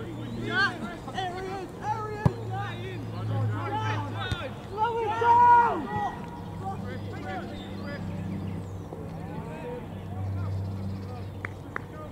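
Shouts and calls of footballers on the pitch during play, the loudest call about five seconds in, over a steady low hum. A single sharp knock comes about two seconds in.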